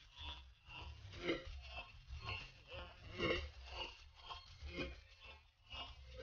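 A person's voice in short, irregular sounds, over a low steady rumble.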